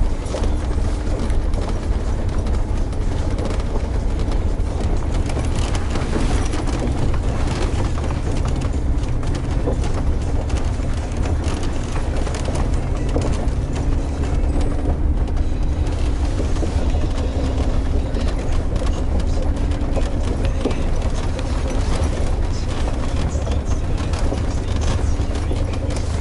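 Mercedes G500's V8 and drivetrain heard from inside the cabin as a steady low rumble while the vehicle drives over rocks, with frequent knocks and crackles from the tyres on the stones.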